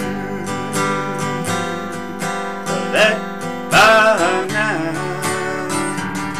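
Acoustic guitar strummed steadily in a country rhythm, about three strokes a second, during an instrumental stretch between sung lines. A short, louder sliding melodic phrase comes in about four seconds in.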